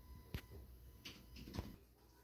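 Near silence in a small room, broken by three faint clicks and knocks about half a second apart, with a faint steady high tone underneath.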